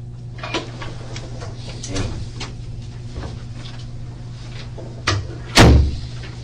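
A wooden door's latch clicks about five seconds in and the door then moves with a heavy thump, the loudest sound, as someone comes into the small room. Before that there are light scattered clicks and taps of small objects being handled, over a steady low electrical hum.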